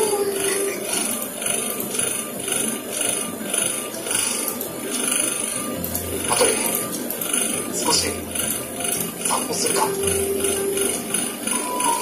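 Anime episode soundtrack: background music with a steady pulse, with a few short lines of Japanese dialogue over it.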